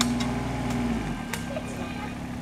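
Kubota mini excavator's diesel engine running steadily, then dropping back to a lighter idle about a second in. A few sharp clicks sound over it.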